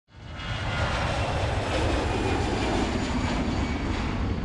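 Steady aircraft engine noise, fading in over the first half second and then holding level.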